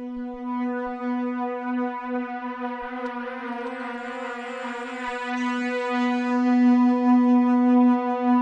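Harmor synthesizer pad from the AeroPad Patcher preset holding one sustained low note, its unison amount being swept, which widens and thickens the sound. It grows louder toward the end.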